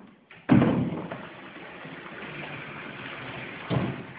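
A sudden loud thump about half a second in, then water running steadily from the bathtub tap into a tub of bathwater, with a second thump near the end.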